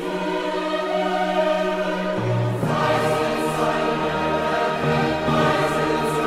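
Choir singing a sacred oratorio in sustained chords; a deeper bass note comes in about two seconds in.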